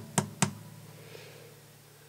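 Two short, sharp clicks close together, then a faint steady low hum.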